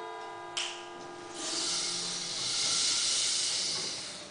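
The last notes of a group of classroom mallet instruments ringing and dying away, followed by a long steady hiss that swells about a second and a half in and fades near the end.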